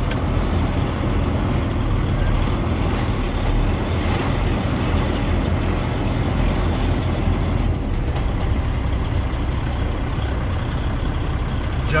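Kenworth T800 dump truck's diesel engine running with a steady low drone, heard inside the cab.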